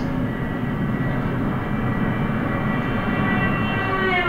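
Car horn sounding steadily, heard from inside another car driving toward it in the opposite direction, over road and engine rumble. The horn grows louder as the cars close and holds its higher approaching pitch; right at the end the pitch starts to fall as the cars pass: the Doppler effect.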